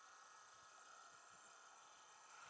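Near silence: a faint steady hiss with a faint steady high tone.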